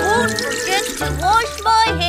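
Children's song: a voice singing over backing music.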